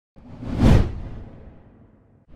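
A single whoosh sound effect with a deep low rumble under it, swelling to a peak a little under a second in and then fading away.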